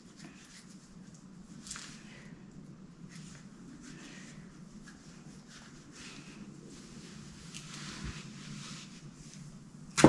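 Faint scraping and light ticks of a small knife working around an avocado pit to pry it out of the half, with one soft knock about eight seconds in.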